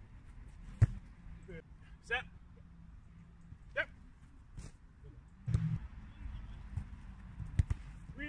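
Footballs being kicked and struck in a goalkeeper drill: a sharp thud about a second in, another around five and a half seconds, and two close together near the end. Short wordless vocal sounds, grunts or brief calls, come between the thuds.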